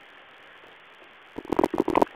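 Narrow-band conference-call phone audio: a faint steady line hiss, then, about a second and a half in, a run of loud, muffled, choppy bursts from an open caller line.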